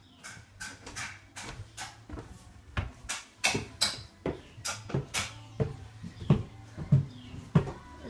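Footsteps climbing a flight of stairs: a steady run of short knocks, two to three a second, with heavier thuds in the second half.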